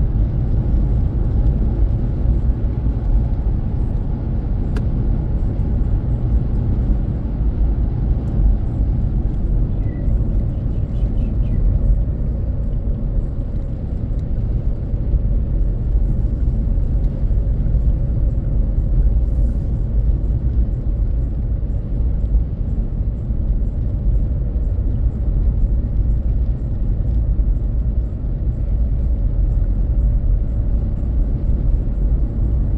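Steady low rumble of a car driving along a road, engine and tyre noise heard from inside the cabin.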